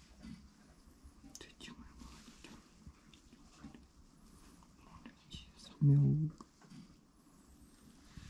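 Faint rustling and soft clicks of a hand stroking a kitten's fur, with a man's voice saying one word softly about three-quarters of the way through.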